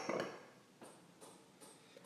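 Faint soft rustles and a few light taps of hands patting and smoothing hair, in an otherwise quiet room.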